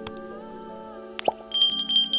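Subscribe-button animation sound effects over soft background music: a click at the start, a short rising pop about a second in, then a small notification bell ringing in quick repeated strikes over the last half second, the loudest sound.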